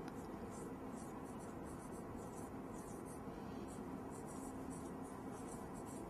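Faint scratch of a pen writing in short, irregular strokes, over a low steady room hum.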